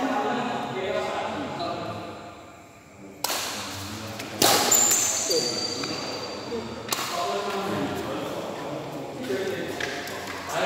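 Voices echoing in a large indoor badminton hall between rallies. A loud rushing noise comes in about three seconds in, jumps louder a second later and stops abruptly about seven seconds in.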